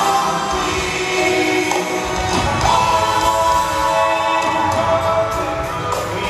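Live band music: a lead singer with acoustic guitar and backing singers in harmony, holding long notes.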